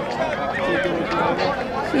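Background chatter of several spectators' voices talking and calling out at once, outdoors.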